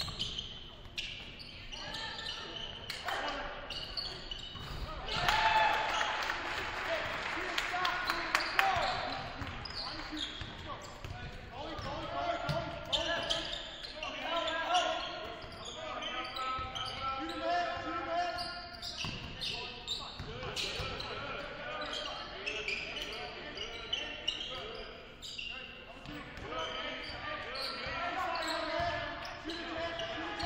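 Basketball being dribbled on a hardwood gym floor, with players' and spectators' shouts echoing around a large hall. Voices and noise swell louder for a few seconds starting about five seconds in.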